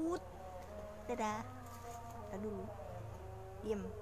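A young woman humming and vocalising close to the microphone: held, buzzing tones with short louder voice sounds about a second in and near the end.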